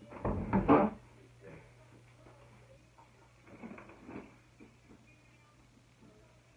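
A person moving about and rummaging: a quick cluster of loud knocks and thuds in the first second, then a few fainter knocks and rustles about three and a half seconds in.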